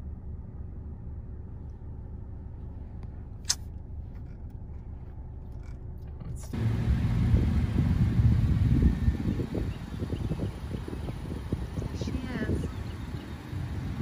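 Honda CR-V engine idling. It is a steady low hum inside the cabin until a cut about six and a half seconds in. After that it is heard from outside beside the car, with wind rumbling on the microphone as the loudest sound.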